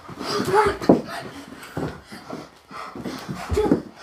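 Children breathing hard and panting while doing burpees, with a few dull thumps of hands and feet landing on a carpeted floor.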